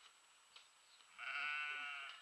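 A lamb bleating once, a single call of about a second that starts a little over a second in.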